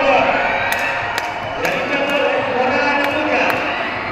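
A commentator's voice over a stadium public-address system, with crowd noise, as an 800 m race nears the finish. A few sharp clicks are scattered through it.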